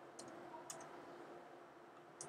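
Two faint computer keyboard key clicks about half a second apart, over a faint steady hum.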